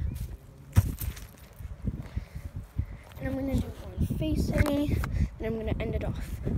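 Other people's voices talking in the background, heard in short snatches, over irregular low thumps of footsteps and a handheld phone being carried, with one sharp knock just under a second in.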